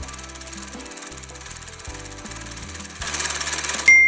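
A spring compression-cycling test machine running, giving a rapid, even mechanical ticking as it repeatedly compresses a small platinum-gallium spring. The ticking grows louder for the last second, and a single bright ding rings out just before the end.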